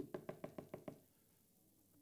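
Knuckles rapping a hard surface: a quick run of about seven knocks in the first second, fading, acted out as a knock at a door.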